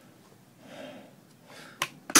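Kone XL-400 hoist on a 15-ton bridge crane giving a single sharp clunk near the end as the up control is worked, without lifting the hook; the owner puts the fault down to a bad relay or switch sensing too much weight on the hook.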